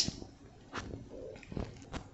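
Faint handling noise of a phone being tipped and moved: a few soft clicks and knocks.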